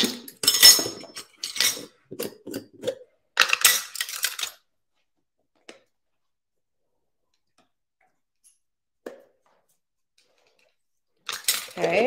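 A set of metal measuring spoons clinking and rattling together and against a jar while minced garlic is scooped out, a quick run of sharp clinks over the first few seconds.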